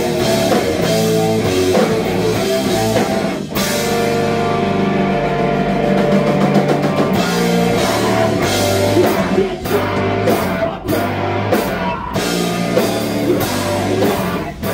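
Live hardcore punk band playing loud distorted guitars and drums with vocals. In the second half the band plays stop-start hits with short breaks between them.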